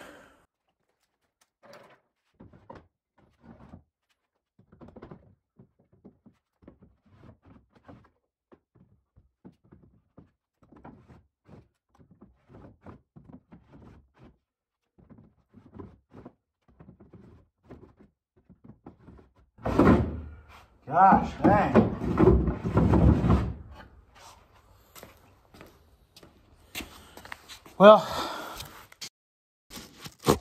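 Wooden drawers of a circa-1900 apothecary cabinet being slid into its cubbyholes: faint scattered knocks, then a loud stretch of wood scraping and thudding about two-thirds in.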